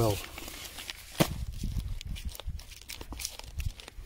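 Rustling and crinkling of black plastic sheeting being handled, with a low rumble from handling and a sharp click about a second in.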